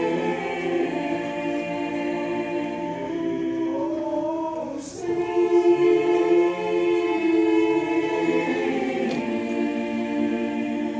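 Mixed high school choir singing long held chords, dropping softer just before halfway and then coming back in louder.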